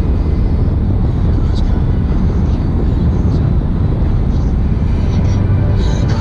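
Steady low rumble of a small car's engine and tyres heard from inside the cabin while driving.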